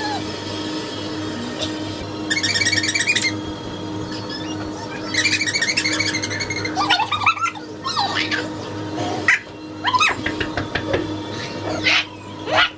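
Small dog at play with plush toys: two bursts of rapid, high squeaking, then short rising and falling squeaky cries in the second half.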